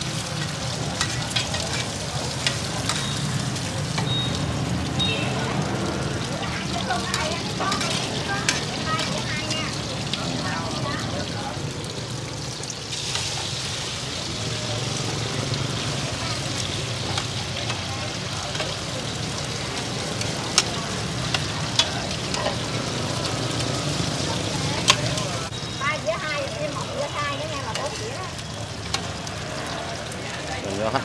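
Cubes of taro flour cake (bột chiên) and eggs sizzling in hot oil in a wide black pan. A metal spatula scrapes and turns them, with a few sharp clicks against the pan in the second half.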